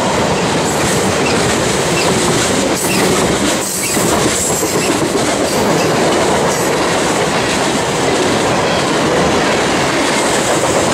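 Freight train cars (tank cars, boxcars and hoppers) rolling past at close range: a steady loud rumble of steel wheels on rail with rhythmic clickety-clack.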